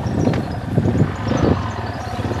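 Yamaha XT250's single-cylinder four-stroke engine running steadily at low revs in a low gear as the bike works up through soft sand, with wind on the microphone.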